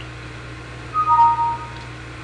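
Two-note electronic chime from the computer: a higher tone about a second in, joined almost at once by a lower one, both held for under a second and then stopping together. A steady low hum runs underneath.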